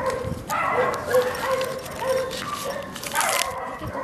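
A frightened dog whining in short, repeated high whines. About half a second in and again near the end comes the crinkle of a plastic sausage packet being pawed.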